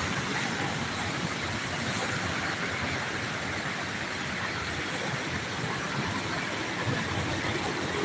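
Steady road traffic noise from a slow-moving line of cars and a bus on a busy city road.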